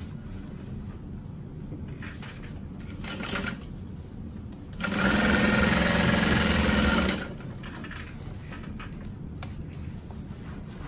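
Juki DU-1181N industrial walking-foot sewing machine stitching a seam through the bag fabric in one run of about two seconds, starting about five seconds in and stopping sharply.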